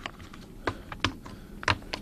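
About five sharp clicks at irregular intervals, with no words between them.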